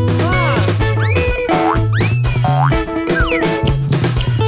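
Cartoon background music with a bouncy bass line, over which come four swooping comedy sound effects, pitch slides that rise and fall like boings: near the start, about a second in, about two seconds in and a falling one past three seconds.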